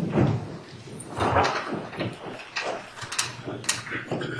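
A roomful of people sitting down after being told to be seated: chairs moving and scattered knocks and rustling, coming irregularly.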